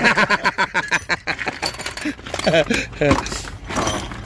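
Metal hand tools (sockets, ratchets and spanners) clinking and rattling against each other as they are handled in a car boot, in a quick run of light clinks over the first second or so, then scattered ones. A man's voice and laughter come in between.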